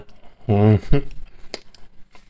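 A man's voice making one short utterance about half a second in, and a single sharp click a little after the middle.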